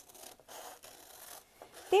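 Scissors cutting through a folded sheet of pink paper, faint scratchy snipping with some rustle as the paper is turned.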